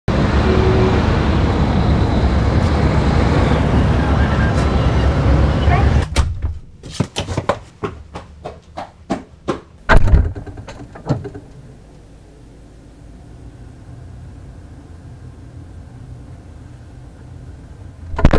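Busy street ambience, traffic rumble and passers-by's voices, for about six seconds. It gives way to a run of sharp knocks and clicks, with one heavy thump near the middle. After that comes a quiet, steady low hum with a faint high whine.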